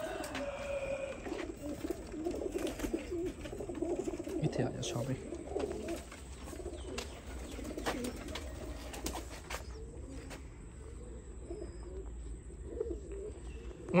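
Domestic pigeons cooing, low wavering coos that go on throughout, with a few faint clicks and knocks from handling.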